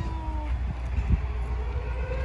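A siren wailing, its pitch sliding down briefly and then rising slowly, over low rumble from wind on the microphone.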